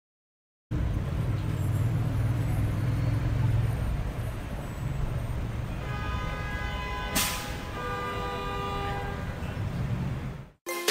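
Outdoor traffic noise with a low engine rumble. From about six seconds in come several held horn-like tones, and a short hiss follows a little after seven seconds.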